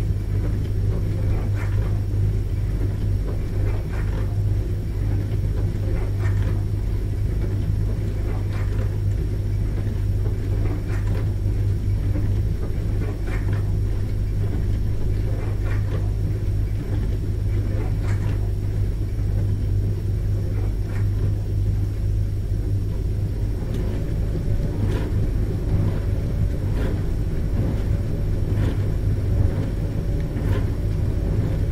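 Dishwasher running: a steady low motor hum under a wash of water, with light irregular taps through it.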